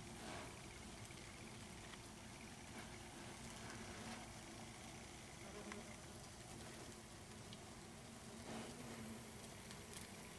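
Near silence with a low hiss and a few brief, faint buzzes from yellow jacket workers around the nest.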